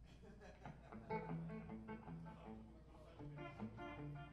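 Electric guitars played quietly on a stage amplifier, a few loose sustained notes and chords without a beat, as the band noodles and warms up before starting a song.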